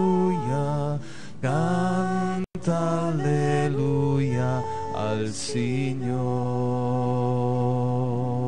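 Slow devotional chant: voices sing long, held notes that glide from one pitch to the next. The sound cuts out for an instant about two and a half seconds in.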